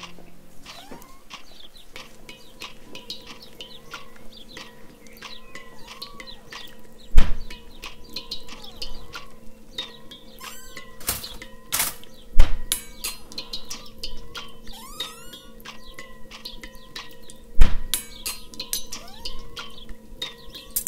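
Composed soundscape: a steady low hum under scattered clicks and short chirps, broken by three heavy thumps about five seconds apart.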